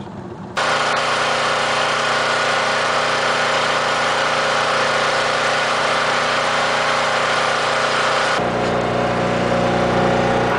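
Generator on an electrofishing boat running steadily, powering the shocking gear: a loud, even engine hum with several steady tones. It comes in abruptly about half a second in, and near the end its lower tones grow stronger.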